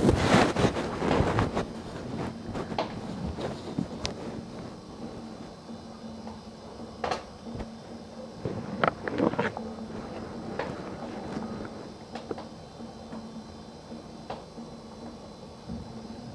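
Close handling noise from a concealed camera: cloth rustling against the microphone at first, then scattered small clicks and knocks, over a steady low hum.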